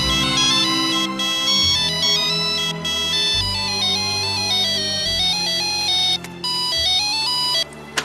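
Mobile phone ringing with a polyphonic melody ringtone, a tune of stepping notes that stops suddenly shortly before the end as the call is answered.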